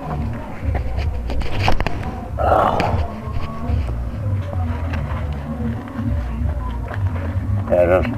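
Muffled, indistinct voices over a low rumble, with scattered clicks and a short burst of noise about two and a half seconds in.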